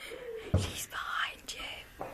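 Hushed whispering from several people, with a soft thump about half a second in.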